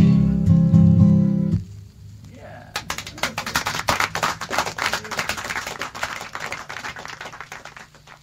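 A folk song ends on a final chord, voices and acoustic guitar held together, which stops about a second and a half in. After a short lull, a dense spatter of crackling, clattering noise begins and fades away toward the end.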